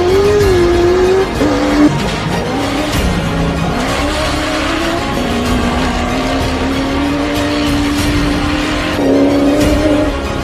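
Ford Ranger rally-raid truck's engine running hard off-road, its revs rising and dropping in steps and then holding steady for several seconds. Music plays under it.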